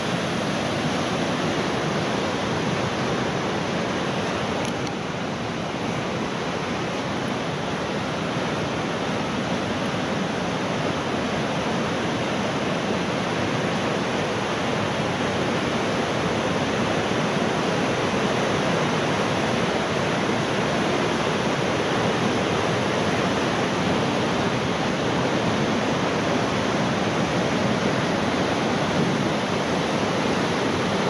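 The Mistaya River's white water rushing through the narrow rock gorge of Mistaya Canyon, a loud, steady, unbroken rush.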